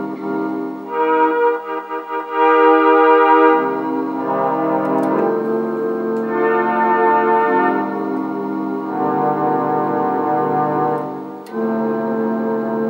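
Roland D-20 synthesizer playing held chords with both hands, the left hand low and the right hand higher. The keyboard is set in split mode, with a separate lower and upper sound. The chords change every second or two.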